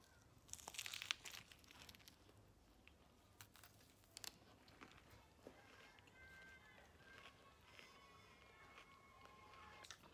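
A bite into a tortilla wrap filled with lettuce and spinach: a short crunchy tearing sound about half a second to a second in, followed by faint chewing and a few small mouth clicks.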